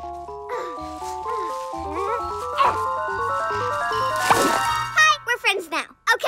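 Playful cartoon underscore with a bouncy melody climbing in steps, a swooshing sound effect about four seconds in, then short excited vocal sounds from a cartoon character near the end.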